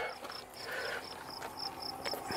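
An insect, most like a cricket or grasshopper, chirping steadily in short high pulses, about four to five a second.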